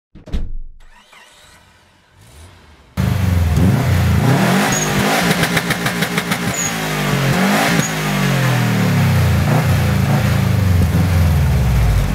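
Subaru Impreza WRX STI's turbocharged flat-four boxer engine revved repeatedly, starting suddenly about three seconds in, its pitch climbing and dropping several times, with a rapid crackle during one of the early revs.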